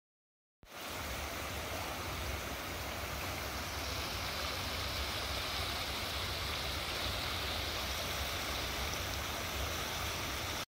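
Steady rush of flowing water from a stream spilling over a low weir, cutting in suddenly about half a second in.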